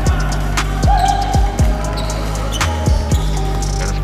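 A basketball being dribbled on a hardwood court, a few irregularly spaced bounces, over background music with a steady bass line.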